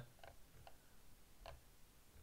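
Near silence with three faint, irregular clicks from a computer mouse's scroll wheel being turned.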